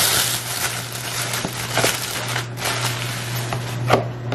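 Thin plastic shopping bag crinkling and rustling in continuous irregular crackles as it is handled and a plastic salad container is pulled out of it. A steady low hum runs underneath.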